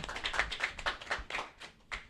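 A small audience clapping, thinning out and fading away over the last half second.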